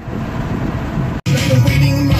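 Low rumble of a car cabin, then an abrupt cut about a second in to loud music with a heavy bass line playing from the car stereo.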